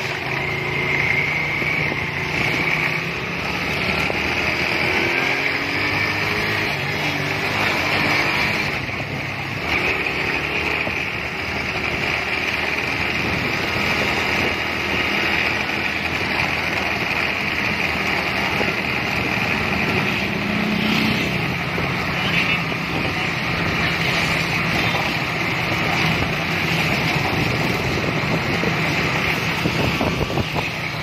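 Engine of the vehicle being ridden running steadily along a street, with wind noise on the microphone and road traffic around. About twenty seconds in, the engine note briefly rises in pitch.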